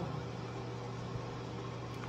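Room background: a steady low hum with an even hiss, from a fan running.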